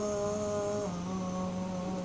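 A teenage boy's voice singing unaccompanied, holding one long note and then stepping down to a lower held note about a second in.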